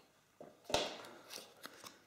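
A smartphone being lifted out of its cardboard box tray: one sharp click or knock about three-quarters of a second in, then small clicks and rustles of the packaging being handled.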